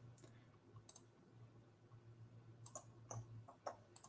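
Near silence with a few faint computer mouse clicks, one about a second in and three more close together near the end.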